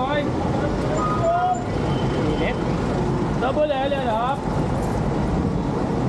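Busy street-market ambience: people's voices talking in short snatches, about a second in and again past the middle, over a steady rumble of road traffic.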